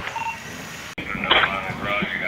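A two-way fire radio channel between transmissions. A brief electronic beep comes just after the start, then a steady radio hiss that cuts out abruptly about a second in, followed by faint broken radio voice.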